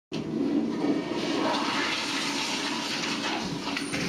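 Toilet flushing, a steady rush of water that goes on for the whole stretch, fullest in the first second or so.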